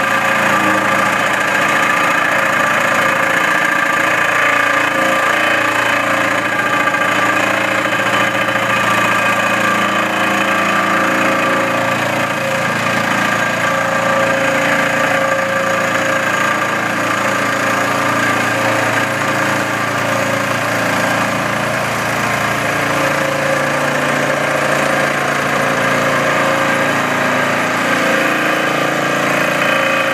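Vibratory pile-driving hammer driving a steel sheet pile into silty sand, a loud, steady, unbroken mechanical hum and rattle with no separate blows.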